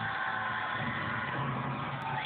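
Title sting of a TV comedy segment heard through a television speaker: a loud, steady rushing noise with a few held tones and no speech.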